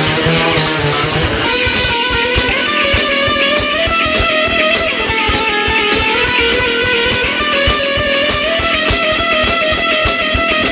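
SG-style electric guitar played through distortion in a fast hardcore punk part, over a backing track with drums keeping a fast, steady beat.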